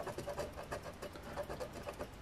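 A coin scraping the coating off a scratch-off lottery ticket, a faint run of many quick short scrapes.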